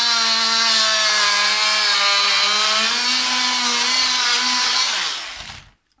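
Handheld power tool scraping old carpet adhesive residue off the floor: a steady motor hum whose pitch sags a little under load in the middle, then winds down and stops shortly before the end.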